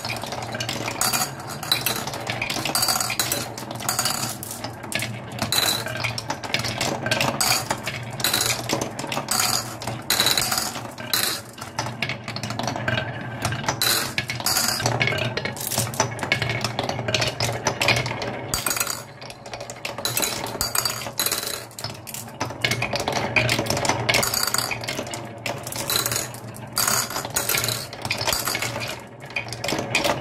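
Marbles rolling and clattering along the wooden tracks of a marble run: a dense, irregular stream of small clicks and knocks as they wind down a spiral and wavy carved wooden channels.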